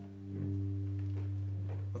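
A chord on a hollow-body electric jazz guitar, struck just before and left ringing steadily, its low notes strongest.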